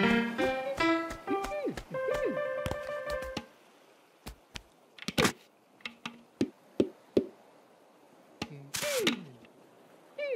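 Light cartoon music with swooping gliding notes, which stops about three and a half seconds in. It is followed by a scattered run of soft taps and thunks, as on an upturned plastic sand bucket, then a short rushing noise and a falling whistle-like glide near the end.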